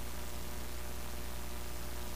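Steady hiss with a low electrical hum and a few faint steady tones underneath: the noise floor of an idle audio feed, with no other sound.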